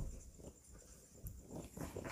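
Mostly quiet room: a soft low thump right at the start, then a few faint scratches and rustles as a marker finishes writing on a whiteboard and is lifted away.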